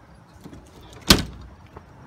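Pickup truck camper cap's lift-up rear glass hatch slammed shut: a single sharp bang about a second in, with a short ring after it.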